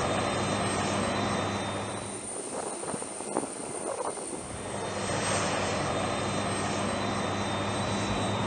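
Turbofan engines of a Lockheed C-5 Galaxy transport running on the ground: a steady engine noise with a constant high whine, dropping lower for a couple of seconds in the middle before returning.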